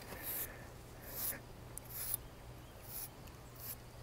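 Faint scratching strokes of a grooming rake through a Highland bull's long, shaggy coat, about five soft swishes in four seconds.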